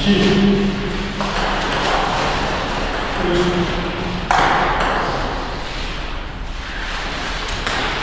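Table tennis ball being hit back and forth in a rally, with short sharp ticks of ball on paddle and table at irregular intervals.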